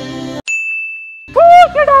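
Background music cuts off, then a single steady ding sounds for under a second as a scene-change sound effect. A loud, high-pitched voice then starts calling out.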